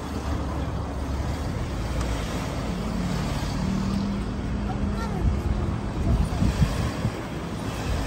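Car driving slowly, its low engine and tyre rumble heard from inside the car, with a steady low hum for a second or two in the middle.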